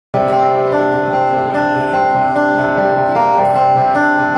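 Live full-band music: acoustic guitar and keyboard playing held chords that change about every half second.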